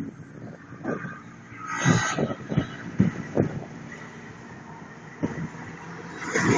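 Street traffic: a vehicle passes close by about two seconds in, and another approaches near the end, over a steady urban hum. Several short low thuds are heard along the way.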